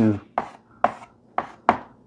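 Chalk tapping and scraping on a blackboard while writing, about four sharp taps spread across the two seconds.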